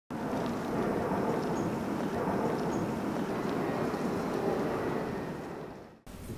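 Outdoor street ambience: a steady wash of distant city traffic noise that fades out just before the end.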